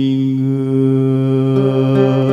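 A male singer holds one long, steady note, accompanied by a nylon-string classical guitar and a violin. Guitar plucks come in near the end.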